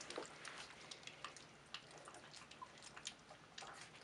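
Border Collie puppies lapping and chewing soft food from a shared bowl: faint, irregular wet smacks and clicks.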